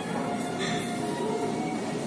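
Steady gym room noise, an even hum of the hall, with faint background music.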